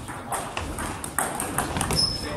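Celluloid-type table tennis ball clicking off rubber paddles and the tabletop in a serve and rally: a run of short, sharp clicks a fraction of a second apart, with more ball strikes from neighbouring tables mixed in.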